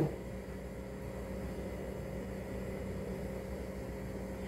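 A steady low mechanical hum with faint noise and no distinct knocks or clatter.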